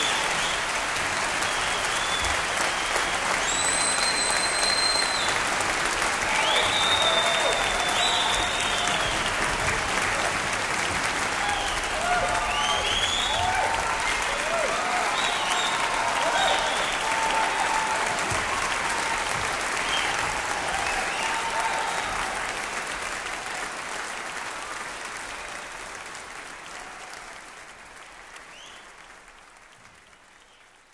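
Concert audience applauding after the music ends, with whistles and cheers among the clapping. The sound fades out over the last eight seconds or so.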